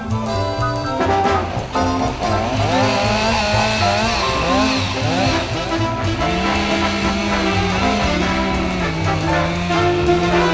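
Jazz music with brass playing over a gasoline chainsaw that revs up and down and runs as it cuts into a tree trunk.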